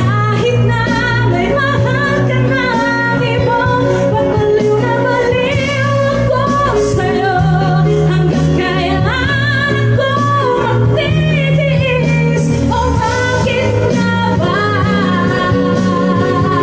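Live band: a woman singing a melody into a microphone over acoustic guitar, with sustained low bass notes that change every couple of seconds.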